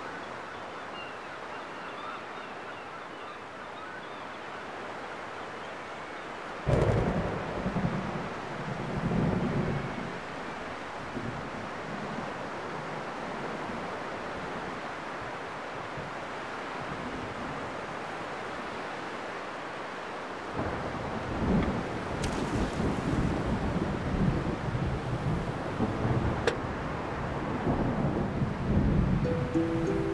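Stormy sea: a steady rush of wind and surf, with a sudden clap of thunder about seven seconds in and rolling rumbles of thunder through the second half.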